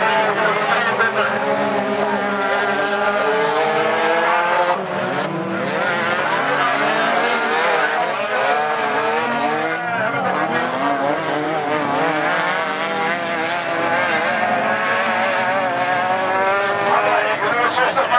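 Several Super Standaard autocross stock cars racing on a dirt track, their engines revving hard with the pitch climbing and dropping as they accelerate and lift. The engines overlap, most tangled in the middle of the stretch.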